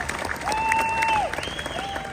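Crowd clapping and applauding just after a pipe band's bagpipes stop, with a couple of held, whistle-like tones over the clapping.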